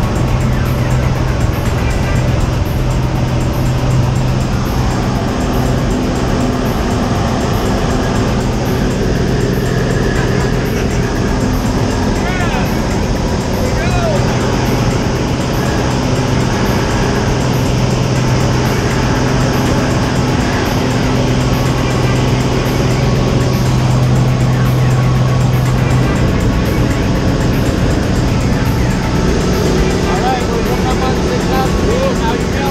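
Single-engine propeller plane running at full power through its takeoff roll and climb, a steady loud drone, with a music track laid over it.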